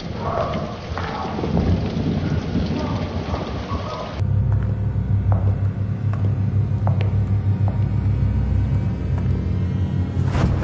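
Rain with thunder rumbling, cut off abruptly about four seconds in. A steady low hum follows, with a few faint clicks.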